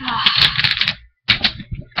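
Glass nail polish bottles clicking and clattering against each other as they are rummaged through: a dense run of clicks in the first second, a brief break, then a few more clicks.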